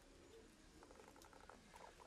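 Near silence, with faint, rapid, high-pitched chirping starting about a second in.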